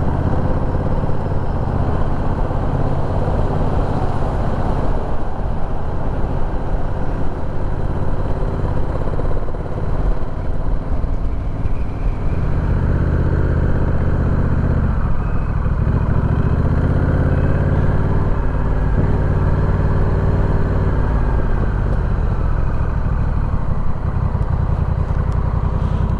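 A Honda Rebel 1100 DCT's parallel-twin engine, heard from the rider's seat while riding at low speed. The engine note dips and rises again through the middle as the bike slows, turns and pulls away through a parking lot, easing down to a crawl near the end.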